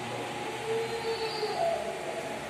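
Steady hum of electric wall fans running in a quiet hall, with a faint held tone about half a second in and another faint rising tone near the end.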